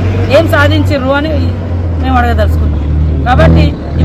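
A woman speaking Telugu in short phrases, with a pause and a louder burst near the end, over a steady low rumble.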